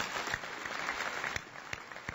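Audience applauding, with many hands clapping at once, the applause thinning out near the end.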